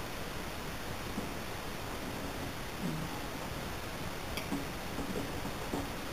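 Steady background hiss with light clicks of a spoon against a small metal coffee pot, one about four and a half seconds in and another near the end, as coffee grounds are skimmed off.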